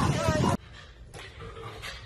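People's voices over a noisy outdoor background that cut off suddenly about half a second in, giving way to quiet room sound with a few faint soft noises.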